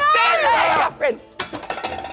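Excited shouting and laughter from several people for about the first second, then a light clatter of small clinks and knocks as props are handled on the studio floor.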